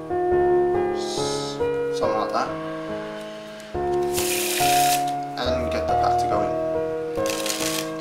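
A deck of Bee playing cards being faro-shuffled, the two halves woven together and squared: three brief rustling swishes, about one, four and seven seconds in, the middle one loudest. Instrumental background music with long held notes plays throughout.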